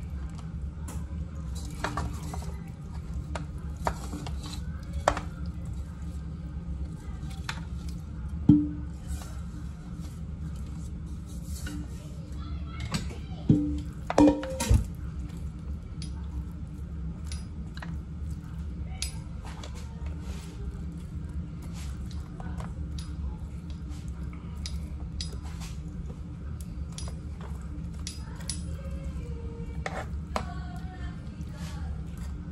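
Metal tongs clinking and scraping against a metal pan as ribs are moved back into it, in many light clicks with a few louder clanks about halfway through, over a steady low hum.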